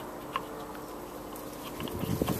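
A few faint clicks and light rubbing as fingers handle a plastic pump impeller, over a steady low background hum.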